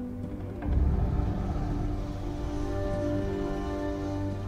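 Film score music of long held chords, with a deep low rumble swelling in just under a second in.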